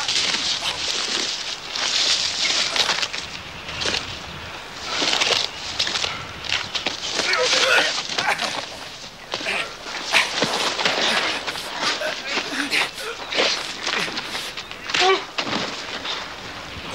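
Two men fistfighting on dry dirt: scuffling and scraping of feet and bodies, with short grunts. A couple of sharper blows or falls land about ten seconds in and again near the end.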